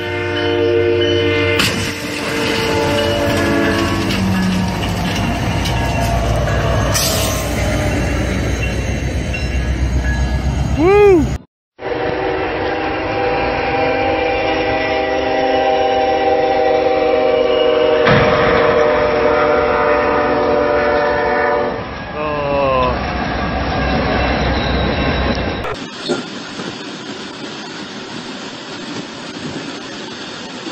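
Locomotive horns blowing at railroad crossings in long, loud chord blasts over the rumble of passing trains, twice sliding down in pitch. Near the end comes a steady rumble of a train running, without the horn.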